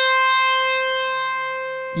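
Stratocaster-style electric guitar holding a single note, C at the 8th fret of the high E string, left ringing after a pull-off from a tapped 12th-fret note. It sustains cleanly and fades slowly.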